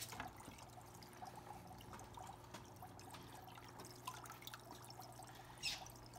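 Faint water trickling and small splashes from a salmon-fry aquarium: the hang-on-back filter's outflow and a dip net moving through the water, over a steady low hum.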